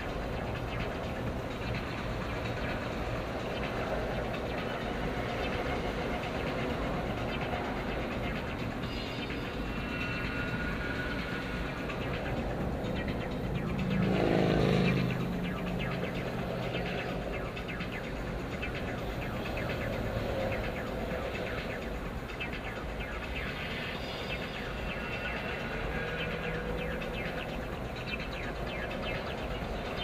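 Steady road and engine noise inside a car moving slowly in freeway traffic. About halfway through there is a brief, louder pitched swell, like a vehicle passing close by.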